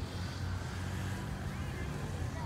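Steady low rumble of outdoor background noise, with faint voices of passers-by.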